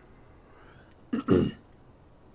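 A man clearing his throat once, a short two-part rasp a little past a second in.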